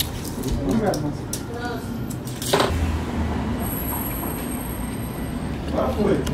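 Faint, muffled voices over a low steady rumble, with one short knock about two and a half seconds in and a thin high whine in the second half.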